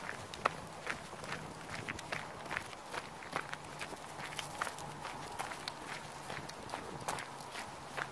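Footsteps crunching on a gravel road, a person and two small leashed dogs walking, in quick irregular crunches of a few a second over a faint steady low hum.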